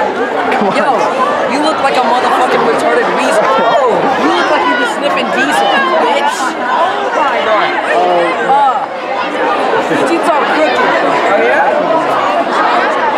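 Crowd chatter: many teenagers' voices talking over one another at once, a dense, unbroken babble.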